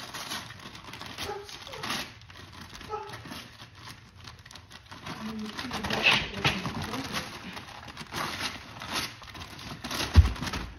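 A greyhound tearing into a wrapped gift with his mouth: wrapping paper crinkling and ripping in irregular rustles, loudest about six seconds in.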